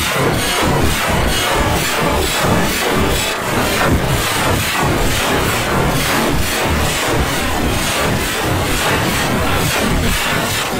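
Loud electronic music with a steady, driving beat.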